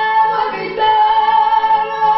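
A woman singing a ranchera, holding a long high note. About half a second in there is a short break, then a steady held note resumes.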